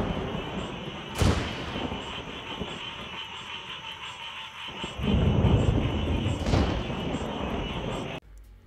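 Thunderstorm: rain falling steadily, with a sharp crack of thunder about a second in and low rolling thunder from about five seconds in, cracking again near the end.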